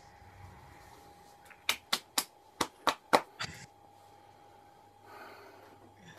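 Six sharp slaps in quick succession, about three a second, over a faint steady hum.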